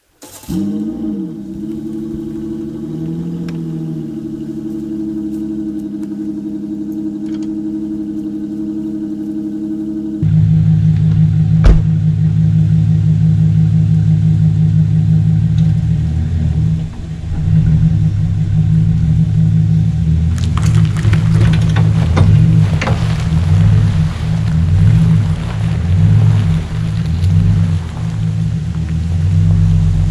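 Chevrolet pickup truck engine starting, its pitch swinging up briefly before it settles into a steady idle. About ten seconds in it runs louder and deeper, with a single clunk, then rises and falls under load as the truck drags logs on a tow strap.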